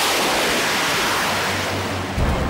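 Jet fighter on an aircraft carrier deck running its engines at full power for a catapult launch, with catapult steam venting: a steady, loud rushing roar.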